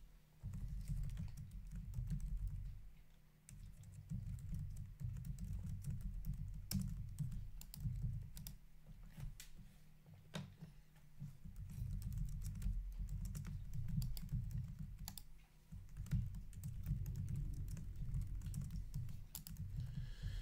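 Typing on a computer keyboard: irregular key clicks over dull low knocks, in uneven spurts with short pauses.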